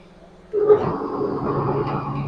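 Electric motor of a 3 HP dal and rice mill switched on about half a second in: a sudden start, then the machine running up to a steady hum.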